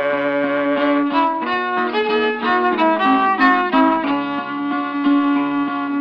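Old-time fiddle playing an instrumental break between sung verses. It bows a melody over a low string held as a steady drone, and the recording's narrow range gives it a thin, dull tone.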